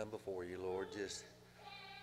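A man speaking slowly over a microphone, opening a prayer, with a drawn-out word near the end. A low steady hum runs underneath.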